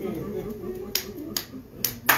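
Three sharp hand claps, a little under half a second apart, over a faint murmur of voice.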